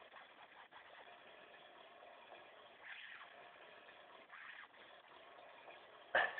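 Near silence: steady low background hiss, with two faint brief sounds about three and four and a half seconds in.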